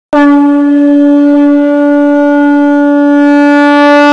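Conch shell (shankh) blown in one loud, long note at a steady pitch, starting abruptly just after the beginning and held throughout.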